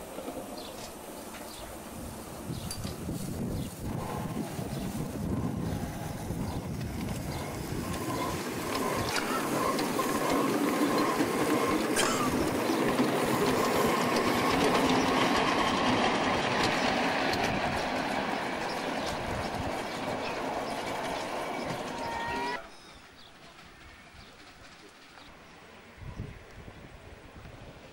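Small-gauge live-steam locomotive hauling ride-on passenger cars along the track, its wheels clattering on the rails, growing louder to a peak about halfway and then easing off. The sound drops suddenly near the end to a much quieter background.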